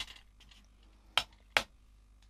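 Plastic ink pad case being snapped open for the first time: two sharp clicks about 1.2 and 1.6 seconds in as the lid comes off, with a smaller click at the start.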